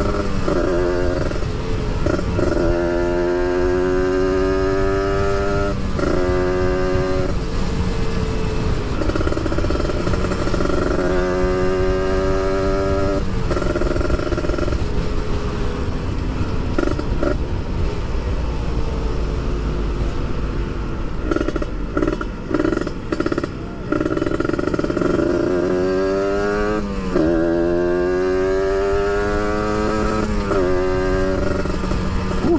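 Kawasaki Ninja RR motorcycle engine accelerating through the gears, its pitch climbing in each gear and dropping back at each shift, over steady wind and road noise. It settles to a more even pitch midway, with a few brief throttle-offs before pulling hard again near the end.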